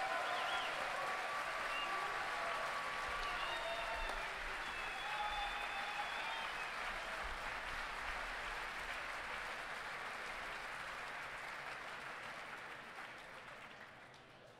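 Audience applauding after an a cappella song ends, with a few voices calling out over the clapping in the first several seconds; the applause slowly dies away toward the end.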